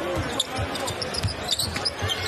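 Basketball being dribbled on a hardwood court, irregular bounces over arena crowd noise.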